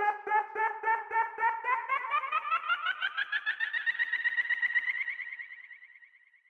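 Outro of an electronic folk-fusion track: a rapidly pulsing electronic note that rises steadily in pitch, then fades out near the end.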